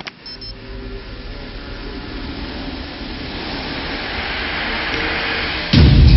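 A click, then a steady hiss that grows slowly louder and brighter. Near the end it breaks off into a sudden loud, deep hit as drum-backed music comes in.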